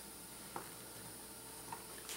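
Faint steady hiss with two small clicks, about half a second in and near the end, from needle-nose pliers bending a hook in pre-tinned speaker wire.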